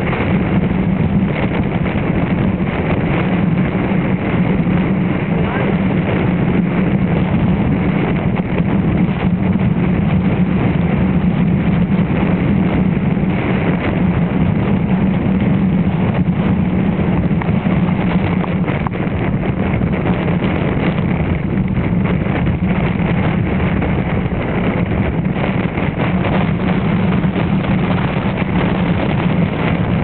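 Strong, steady wind buffeting the camera microphone, over the wash of small waves breaking on a sandy shore.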